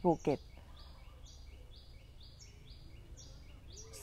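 A high chirp repeating evenly about twice a second, from a bird or insect outdoors, over a low steady rumble of background noise.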